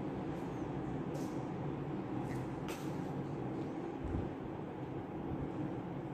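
A steady low hum, with a few faint, short scratches of a black sketch pen drawing on paper: one about a second in and another near the three-second mark.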